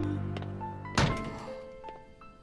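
A single thud about a second in, a door shutting as someone comes in, over the fading tail of background music with a few soft sustained notes.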